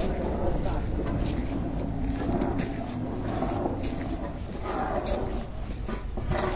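Low rumble of wind buffeting a phone microphone that is carried on foot, with a voice talking indistinctly over it and scattered light clicks.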